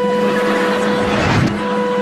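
Racing-car engine sound effect: a steady engine drone under a hiss, with a brief dip partway through.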